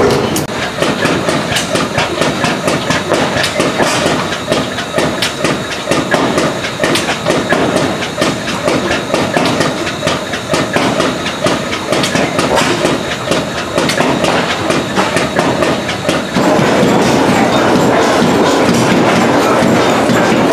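Large vintage horizontal stationary gas engines running, with a fast, even clatter of knocks and exhaust beats. About sixteen seconds in the sound changes to a louder, steadier running.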